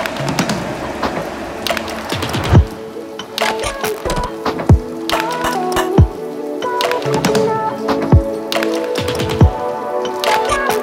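Background music: held notes over deep drum hits that drop in pitch, coming every second or two.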